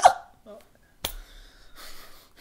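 A short hiccup-like voice sound from one of the hosts fades out at the start. About a second in there is a single sharp click with a brief low rumble after it.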